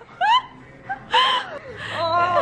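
A person gasping and giving two short, high, excited vocal exclamations, the first rising in pitch near the start and the second louder and breathier a little after a second in.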